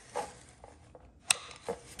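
Faint handling of a plastic spring clip and solar panel, with one sharp click a little past halfway and a smaller one shortly after.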